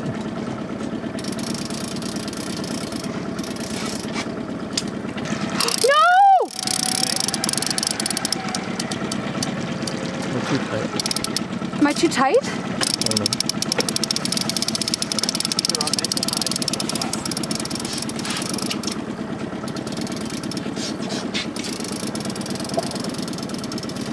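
Outboard motors of a sport-fishing boat running steadily at a slow trolling idle.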